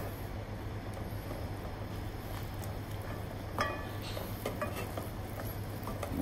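Wooden spatula stirring flour into hot melted butter and water in a stainless steel saucepan, the first mixing of a choux pastry dough: quiet soft scraping, with one sharp knock of the spatula against the pan about three and a half seconds in and a few light ticks after it, over a steady low hum.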